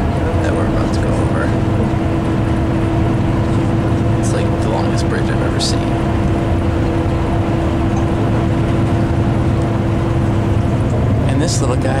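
Steady drone of a moving coach bus heard from inside the cabin: engine and road noise, with a steady hum that cuts out near the end and a couple of short clicks around the middle.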